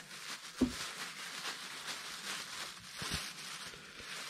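Hands rummaging through a pile of scrap and a plastic bag, with faint rustling throughout and a short knock about half a second in and a fainter one around three seconds.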